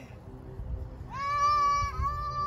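A high-pitched voice calling out in two long held notes, one right after the other, each with a short rise at the start and a fall at the end.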